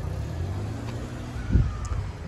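A car engine running nearby, a steady low rumble, with a single thump about one and a half seconds in.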